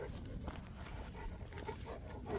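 Several large mastiff-type dogs moving about close to the microphone, making faint short dog noises over a steady low rumble.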